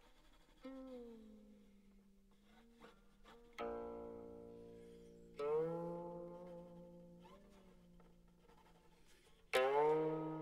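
Slow, sparse music on a plucked string instrument: four single plucked notes, each ringing out and fading, with the pitch bending on some of them.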